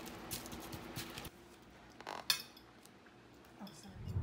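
A metal fork clicking lightly against a sheet pan of raw steaks, a few scattered taps. The sound then drops quieter, with one sharper clink of cutlery a little after two seconds in.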